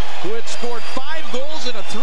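A man's voice speaking: a television hockey commentator talking over steady background noise.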